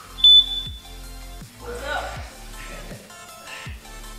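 A single short, loud electronic beep from a gym interval timer about a quarter of a second in, signalling the end of the rest and the start of the next work interval. Background music with a steady beat runs underneath.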